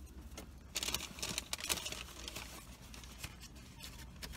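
Faint chewing: irregular mouth clicks and smacks, thickest between about one and two seconds in, as a piece of spicy gyro meat is eaten on its own.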